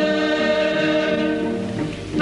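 Choir singing with orchestral accompaniment in sustained chords, easing off slightly toward the end.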